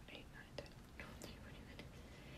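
Faint whispering: a woman counting under her breath.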